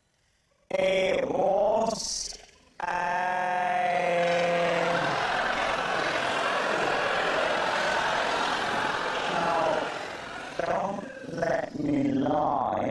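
After a brief near silence, a person's voice makes two drawn-out sounds, then a studio audience laughs in a long, even wave that dies down near the end as voices come back.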